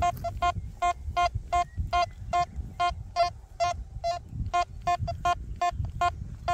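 Quest Q60 metal detector beeping on a target: a steady train of short beeps at one mid pitch, about two to three a second, as the coil is swept over a 10-cent euro coin buried 5 cm deep.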